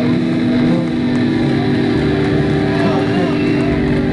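Live rock band on stage: a distorted electric guitar holds a sustained, droning note through a Marshall amp, with a voice over it; the held note cuts off just before the end.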